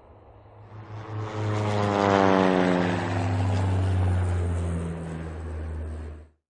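An engine passing by: a low, steady hum grows louder about a second in, and a whine above it falls in pitch as it goes past.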